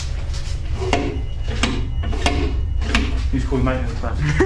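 Toilet cistern flush handle being worked: four sharp clunks about two-thirds of a second apart, with no rush of water after them.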